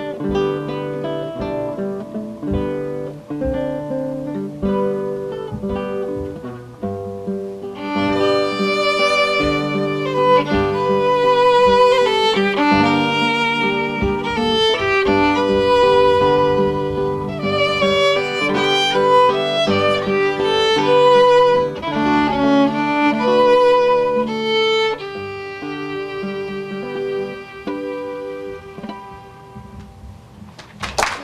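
An acoustic guitar plays an American folk tune, and a bowed fiddle comes in with the melody about eight seconds in, the two playing together from then on.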